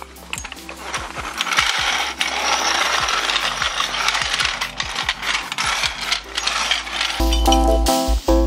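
Metallic clicking and rattling from a steel floor jack being handled and moved on a concrete drive. Background music with a heavy low beat comes in near the end.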